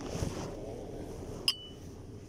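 A low rumble near the start, then about one and a half seconds in a single sharp metallic clink of steel testing tools knocking together, ringing briefly.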